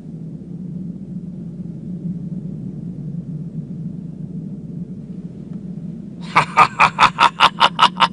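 A steady low rumble, then about six seconds in a rapid run of about a dozen short pitched cries, like the cackling laugh of an animated monster.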